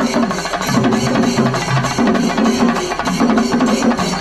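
Singari melam troupe of chenda drums beaten with sticks, playing a fast, dense, driving rhythm.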